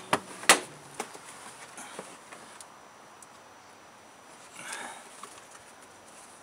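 Metal oil-filter strap wrench clicking and knocking as it is fitted and levered against an oil filter to loosen it: two sharp clicks at the start, then a few fainter ones. A short breathy noise follows near the end.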